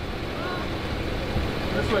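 Steady low engine rumble of an idling armored police truck, with faint voices in the background.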